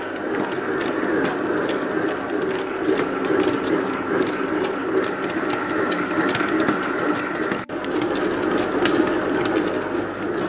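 Commercial planetary dough mixer running steadily, its dough hook kneading yeasted bun dough in the steel bowl. The motor and gearing make a steady hum, with many small irregular clicks and knocks.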